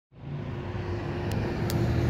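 Steady low rumble of outdoor street traffic, cutting in right after a moment of silence, with a faint steady hum over it.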